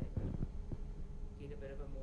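Faint, off-microphone speech over a steady low hum, with a few soft low thumps about half a second in.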